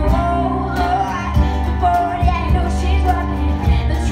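Live band playing an upbeat song, with a woman singing over electric guitar, bass and a steady drum beat.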